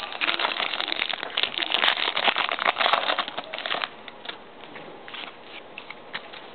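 A foil trading-card pack wrapper crinkling and crackling as it is torn open by hand, for about four seconds. After that come softer rustles and clicks as the cards are handled.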